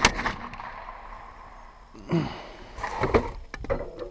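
Handgun shots fired from inside a pickup truck's cab through the open window. A quick string of shots comes at the start and another few about three seconds in, each with a reverberant tail.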